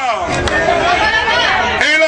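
Many voices of a crowd calling out and chattering together, with a man's amplified voice in the mix.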